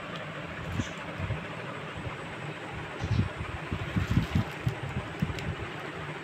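Steady background hiss with soft, irregular low bumps and rustling from about three seconds in: khaddar cloth being handled close to the microphone.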